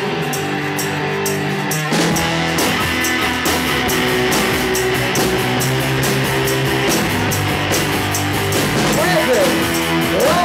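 Live rock band: an electric guitar riff over a steady high tick, then the drums and bass come in together about two seconds in. A voice starts singing near the end.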